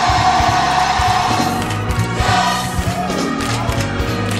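Gospel music with a choir singing, one note held for the first second and a half over a steady bass line.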